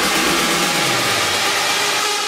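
Electronic dance music in a breakdown: a wash of synth noise with held high synth tones, the bass and beat dropping out in the first second.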